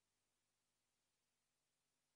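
Near silence: only the recording's faint, steady noise floor.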